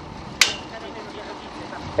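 Steady low outdoor background noise, with one sharp click about half a second in that rings briefly.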